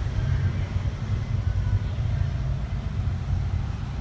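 A steady low rumble of background noise runs underneath, with no speech.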